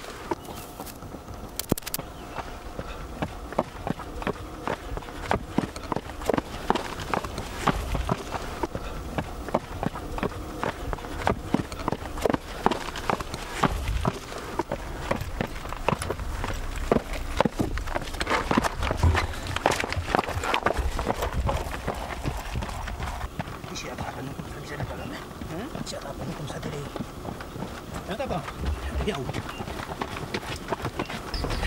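Trail runners' footsteps on a rocky mountain path: irregular knocks and scuffs of shoes striking stone and dirt, several steps a second, with voices in the background.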